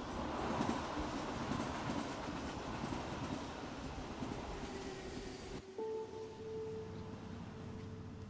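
Orange JR electric commuter train running along a station platform, a loud, even rush of rail noise that cuts off abruptly about five and a half seconds in. A quieter steady tone follows to the end.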